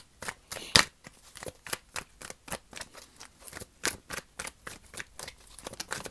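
A deck of tarot cards being shuffled by hand: an uneven run of short card clicks and snaps, about four or five a second, the sharpest about a second in.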